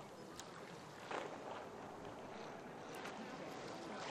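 Small waves lapping softly on a sandy shore, with a slightly louder wash about a second in.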